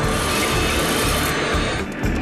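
Cartoon sound effect of a jet aircraft flying in: a steady rushing roar with a faint whine, which drops away just before the end.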